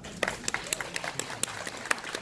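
Audience clapping: a quick run of irregular, separate hand claps.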